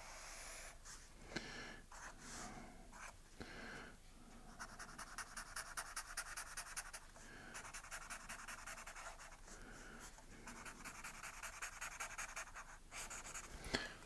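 Felt-tip marker rubbing quickly back and forth on paper, shading in a solid black area. The rapid scribbling starts about four seconds in and comes in three runs with short pauses between them.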